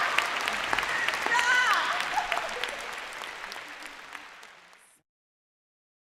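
Live audience applauding and cheering, with a few shouted voices among the clapping. The sound fades away and ends in silence about five seconds in.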